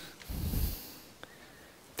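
A short, breathy puff of sound lasting about half a second, then a faint single click a little past the middle; otherwise low room tone.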